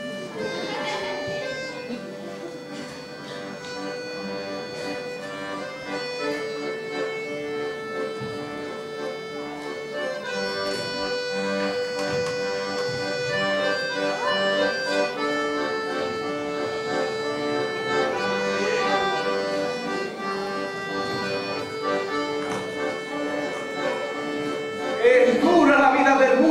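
Two accordions playing an instrumental tune together, mostly long held notes and chords.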